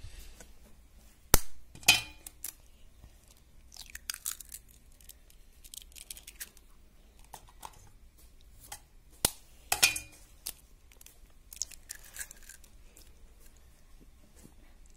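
Two raw eggs cracked open one after the other, about eight seconds apart. Each starts with a sharp tap of the shell against a hard edge and is followed by a short crackle as the shell is broken apart, with faint rustling in between.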